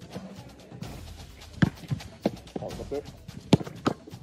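About five sharp thuds of a football being played and caught and a goalkeeper diving onto artificial turf, the loudest about one and a half seconds in and again near the end, over background music.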